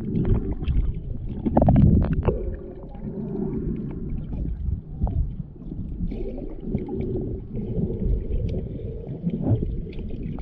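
Underwater water noise heard through a submerged camera's microphone: a muffled low rumble of moving water with scattered clicks and crackles, loudest about two seconds in.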